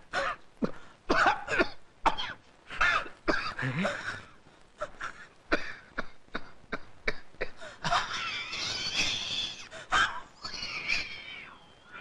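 Men coughing over and over in short, irregular fits, choking on smoke, with a longer rasping, wheezing stretch about eight seconds in.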